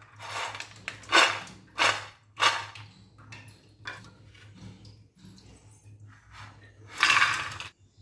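Crispy batter-coated fried peanuts clattering as they are poured from a steel plate into a ceramic serving dish, in several short rattling bursts with the longest and loudest near the end. The dry, hard rattle shows the coating is fried crisp.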